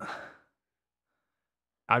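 A short breathy exhale, like a sigh, fading out within half a second, followed by dead silence until a man starts speaking again at the very end.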